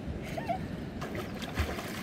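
Shallow sea water sloshing and splashing softly as a child paddles and slaps at the surface, with a low thump about one and a half seconds in.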